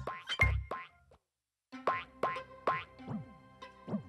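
Cartoon sound effects of a bouncing ball: springy boings with short sliding pitches, over light children's music. The music stops briefly about a second in, with a moment of silence before the boings begin.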